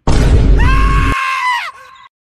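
A sudden loud burst of harsh noise, joined about half a second in by a high-pitched scream that is held for about a second and drops off near the end.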